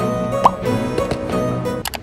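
Light background music for an edited vlog, with a short rising 'bloop' sound effect about half a second in; the music thins out and drops in level near the end.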